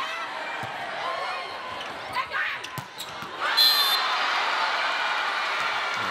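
A volleyball rally in an indoor arena: the ball is struck a few times over steady crowd noise, and the crowd cheers louder a little past halfway through.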